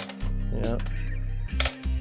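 Background music with steady low tones, over a few sharp clicks near the start and again late on: the metal latch and plastic lid of a Polaroid Model 240 print copier being unclipped and opened by hand.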